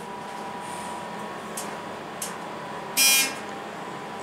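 Steady faint hum inside a hydraulic elevator cab, with a couple of faint clicks. About three seconds in, a short, loud electronic beep sounds from the elevator.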